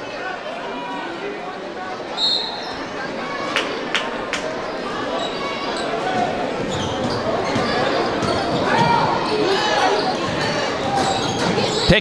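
Basketball being dribbled on a hardwood gym floor under the talk and calls of a crowd in the stands, the crowd growing louder. A few sharp knocks about two to four seconds in and a sharp impact near the end.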